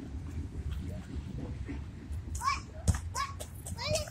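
Several short, high-pitched children's calls or squeals in the second half, over a steady low rumble, with one sharp click near the end.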